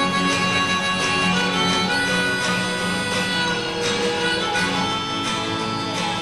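Harmonica in a neck rack playing held melody notes over a strummed twelve-string acoustic guitar, an instrumental break in a folk song.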